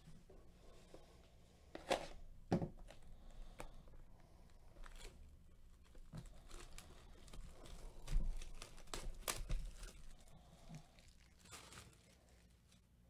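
Plastic wrap being torn and crinkled off a sealed Panini Diamond Kings hobby box of trading cards: a run of irregular sharp rips and crackles, loudest about two seconds in and again around eight to nine seconds.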